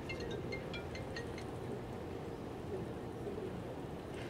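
Quiet outdoor background with a steady low hum. Over the first second and a half, a bird chirps a quick run of short, high notes at changing pitches.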